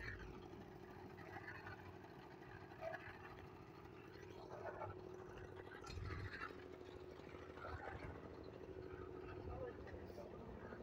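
Faint, distant voices talking over a steady low hum, with a low thump about six seconds in.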